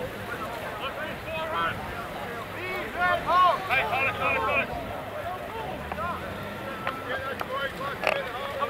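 Rugby players shouting short, overlapping calls across the pitch, loudest about three to four and a half seconds in, with wind rumbling on the microphone.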